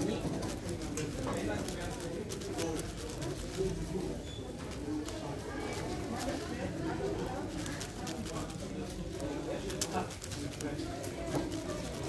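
Rapid plastic clicking and clacking of a 7x7 speed cube being turned in the hands, over background voices talking.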